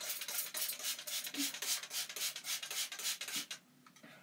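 Small plastic spray bottle pumped rapidly, giving a quick run of short hissing sprays, about five a second, that stops about three and a half seconds in.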